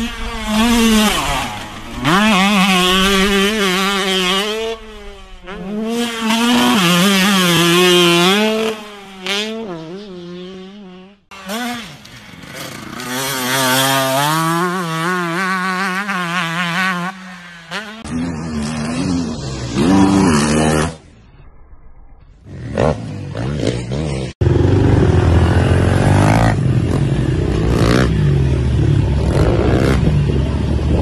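Dirt bike engines revving up and easing off again and again as the bikes are ridden, heard in several separate clips that cut off abruptly about 11, 18 and 24 seconds in. The last part is a loud, rough, steady noise.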